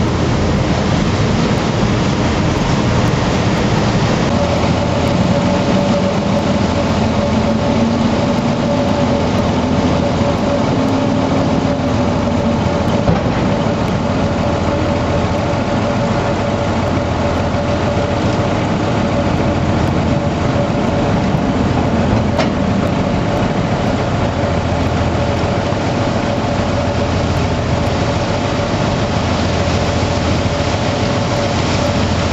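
Machinery aboard the Silver Spade, a Bucyrus-Erie 1950-B electric stripping shovel, running as its deck and machinery turn: a loud, steady mechanical drone. A steady whine sets in about four seconds in, and a lower tone rises and fades over the first dozen seconds.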